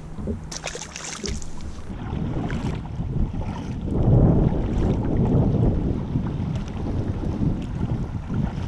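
Kayak paddle dipping and pulling through river water under a low rumble of wind on the microphone, loudest about four seconds in. A short splashy hiss comes near the start.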